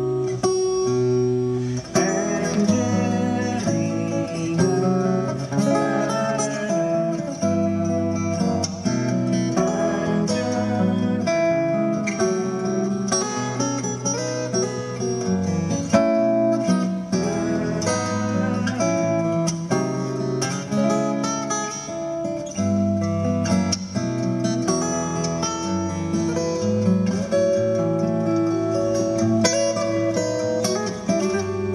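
Solo steel-string acoustic guitar played fingerstyle: a melody picked over bass notes and chords, at an even level throughout.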